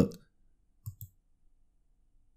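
A computer mouse button clicked once, heard as two quick clicks of press and release a little under a second in, selecting an option in a print dialog.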